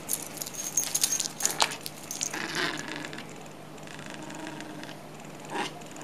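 A red poodle playing with a plush toy on a rug: a quick flurry of light clicks, scuffs and jingles from its paws and harness in the first couple of seconds, then quieter rustling.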